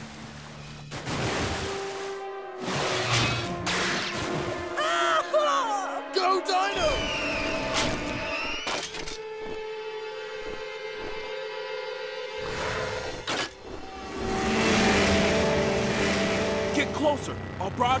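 Action cartoon soundtrack: score music mixed with whoosh and crash effects, with a wavering cry about five seconds in.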